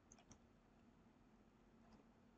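Near silence: room tone with a few faint computer clicks, two or three close together near the start and one just before the end.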